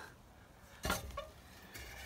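Two light metallic clicks from the fuel filler door of a 1966 Ford Galaxie 500 being handled: a sharp one about a second in and a fainter one just after, with near quiet around them.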